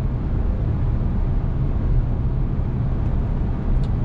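Steady low drone inside the cabin of an Audi A5 quattro cruising at highway speed in seventh gear: engine, tyre and road noise with no change in pitch.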